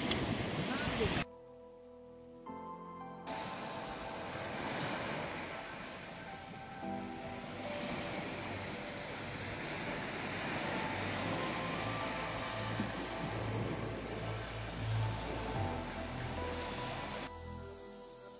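Small waves washing onto a beach, cut off abruptly about a second in; soft background music with sustained notes follows, with the wash of surf under it.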